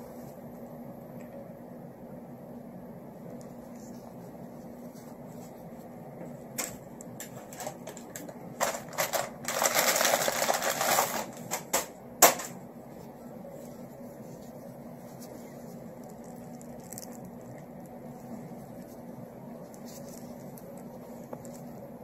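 A steady faint hum under quiet room tone. A few soft clicks come first, then about ten seconds in a couple of seconds of loud rustling, and a single sharp click just after.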